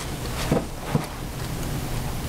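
Steady background hiss with a low hum, and two faint light taps about half a second and a second in.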